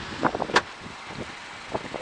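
Footsteps and a few sharp knocks as someone walks across an asphalt car park. The loudest knock comes about half a second in, and wind on the microphone runs under them.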